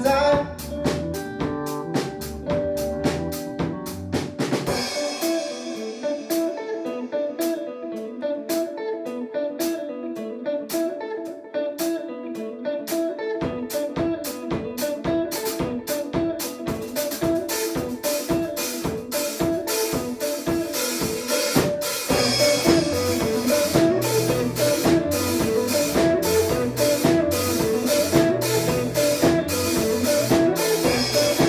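A live rock band plays an instrumental passage: an electric guitar picks a repeating riff over steady drums. The low end drops out about five seconds in, leaving guitar and drums, then the full band comes back in louder about 22 seconds in.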